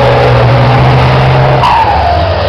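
Race truck's diesel engine running loud and steady as the truck passes close, its pitch falling in the last half second.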